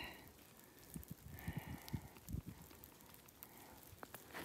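Near-quiet outdoor air with faint, scattered soft taps of water dripping from the trees.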